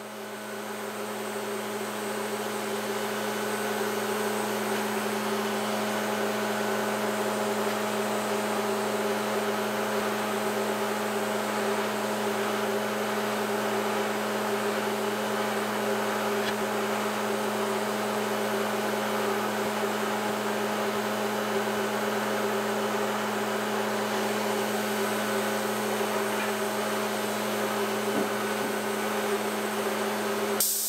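Steady motor hum of running woodworking shop machinery, swelling over the first few seconds and then holding level.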